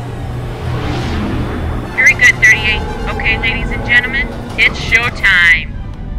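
A low steady drone with a swelling whoosh about a second in, then, from about two seconds in, several loud bursts of thin, heavily filtered radio-style voice chatter.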